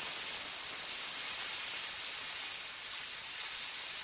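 Steady, even hiss of steam venting, as from a steam locomotive.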